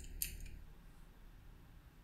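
Two sharp computer-keyboard key clicks right at the start, then faint room tone.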